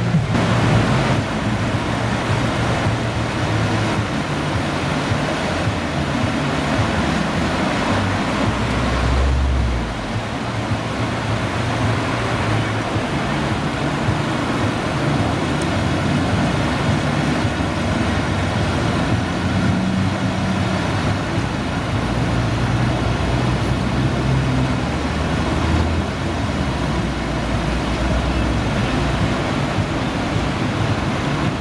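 Rushing whitewater of a river slalom course pouring over a weir and through rapids: a steady, loud rush of water.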